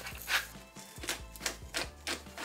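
Hand-twisted salt grinder, then a pepper mill, grinding in short, irregular rapid clicks.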